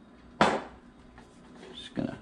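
One sharp knock about half a second in, from the seasoning shaker being handled over the plate of fish, followed by a few faint small handling clicks.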